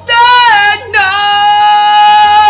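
A male singer's high rock vocal: a short sung phrase, then one long high note held steadily from about a second in.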